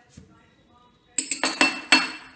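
Metal parts of a hand-held idiyappam (string hopper) press clinking and clattering as they are handled and taken apart. The quick run of ringing clinks starts about a second in.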